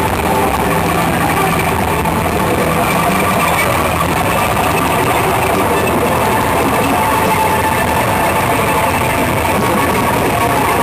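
Distorted electric guitars played live through amplifiers as a loud, steady wall of noise with no clear beat.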